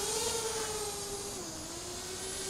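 Quadcopter drone propellers humming as it hovers, a steady pitched drone whose pitch wavers and dips slightly about halfway through.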